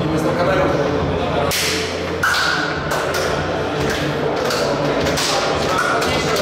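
Indistinct voices over a run of irregular thumps and hand slaps as players slap hands while filing past in a corridor.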